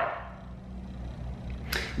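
A pause in a man's talk: faint room tone with a low steady hum, and a quick intake of breath near the end just before he speaks again.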